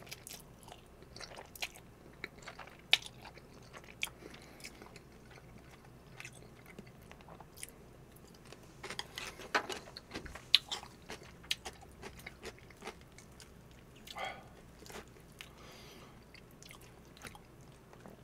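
Close-miked mouth sounds of a man eating truffle cream pasta: chewing noodles, with wet clicks and smacks scattered through and busiest around the middle.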